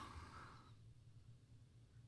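Near silence: faint room tone with a low steady hum, a faint sound dying away in the first half second.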